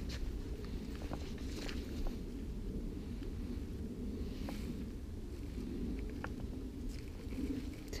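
Footsteps of a person walking along a leaf-strewn dirt path, with a few faint ticks over a steady low rumble.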